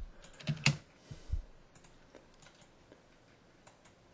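Computer keyboard and mouse clicking: a few sharp key and button clicks in the first second and a half, with a soft thump among them, then fainter scattered ticks.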